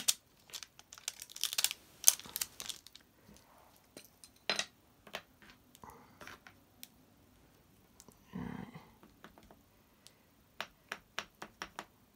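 Small clicks, taps and crinkles of clear plastic stamps, their carrier sheet and an acrylic block being handled on a cutting mat. The loudest cluster of clicks comes in the first couple of seconds, and a quick run of light taps comes near the end.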